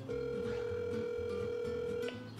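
Telephone ringback tone from a smartphone on speakerphone: one steady ring about two seconds long, the sign that the outgoing call is ringing at the other end and has not been answered.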